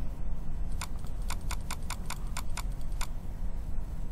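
Computer mouse button clicked about a dozen times in quick succession, about five clicks a second, starting about a second in and stopping near the three-second mark, over a low steady hum. The clicks are repeated presses of Excel's Increase Font Size button, each stepping the text up one size.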